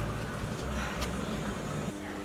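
Outdoor street background noise: a steady low rumble, with a faint click about a second in.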